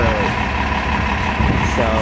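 City transit bus idling at a stop: a steady low engine rumble with a thin, constant high hum over it.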